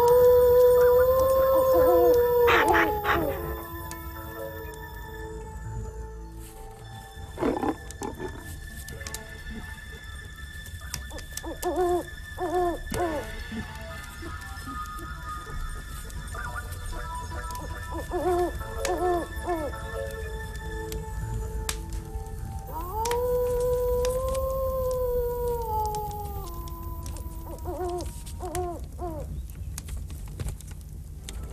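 Night forest sounds: a long wolf howl that rises, holds and falls away near the start, and another from about 23 seconds in. Short owl hoots, in pairs, come in between, over a faint steady music bed.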